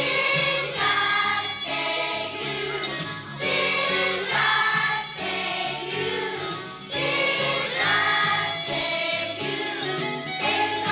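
Children's choir singing a song with instrumental accompaniment, in phrases of a second or two over steady bass notes.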